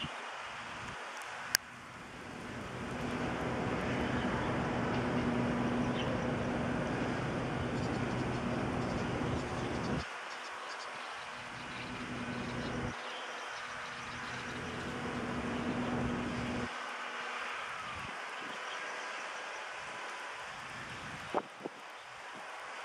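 Low, steady engine rumble with a hum, typical of a motor vehicle running close by. It cuts off suddenly about halfway through, comes back, and stops suddenly again. There is a sharp click shortly after the start.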